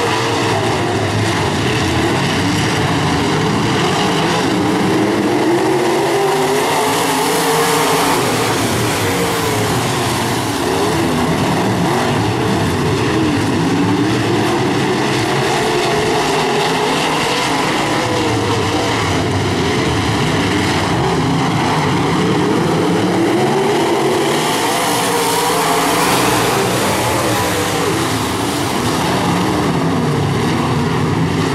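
A pack of IMCA Modified dirt-track race cars running at racing speed, their V8 engines rising and falling in pitch over and over as the cars accelerate down the straights and lift for the turns.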